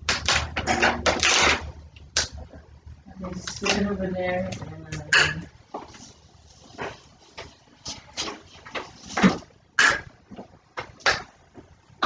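An indistinct voice with no clear words, together with short clicks and crinkles of a plastic water bottle being handled, opened and drunk from.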